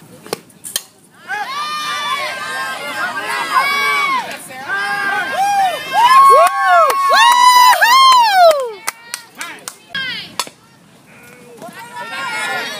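High-pitched girls' voices shouting and cheering, several at once, from about a second in until about eight and a half seconds, loudest near the end of that stretch. A few sharp clicks come near the start and again after the voices stop.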